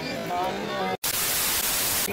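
Voices at a busy outdoor market, cut off suddenly about halfway and replaced by a steady hiss of white-noise static, an edited-in transition effect.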